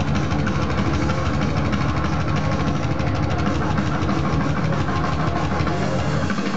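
Live thrash metal band playing loud: distorted electric guitar and drums in a fast, dense riff with rapid, even strokes.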